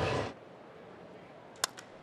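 Faint ballpark crowd murmur, then a single sharp crack of a baseball bat meeting a pitch near the end, followed by a lighter click. The commentator thinks the bat might have broken on the swing.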